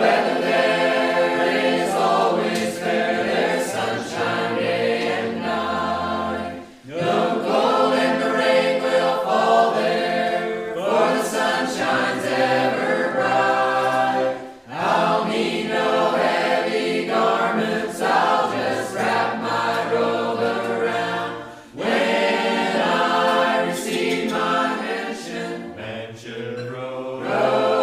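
Mennonite choir singing a hymn a cappella. The voices sing long phrases with short breaths between them, about every seven seconds.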